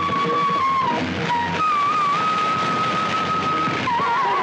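Bansuri (bamboo flute) playing long held notes: one steady note, a short lower note just after a second in, then a slightly higher note held with a light waver. An even hiss runs underneath.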